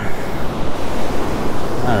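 Ocean surf breaking and washing up a sandy beach: a steady rush of noise.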